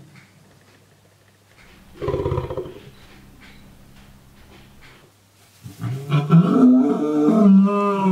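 Adult male lion roaring: a short, rough call about two seconds in, then a long, loud roar from near the six-second mark that rises and falls in pitch and carries on past the end.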